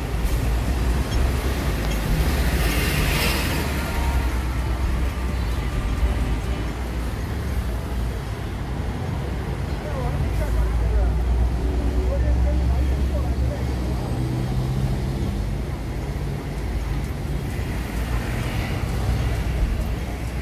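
City road traffic at an intersection: bus and car engines with a steady low rumble that swells in the middle, and a brief hiss about three seconds in.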